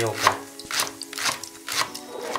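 Kitchen knife slicing a leek finely on a wooden cutting board, the blade striking the board about every half second.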